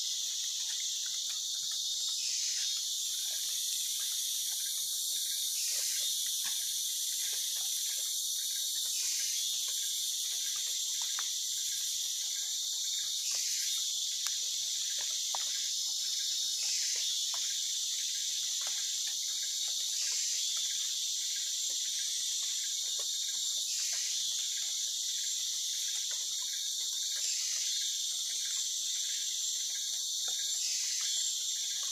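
Steady, dense high-pitched chorus of tropical forest insects, with faint light clicks underneath.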